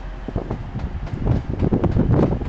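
TransPennine Express Class 185 diesel multiple unit running into the station on a far track, a steady rumble, with wind buffeting the microphone.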